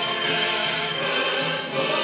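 Choir singing with orchestral accompaniment in a recorded choral musical arrangement, many voices holding sustained chords.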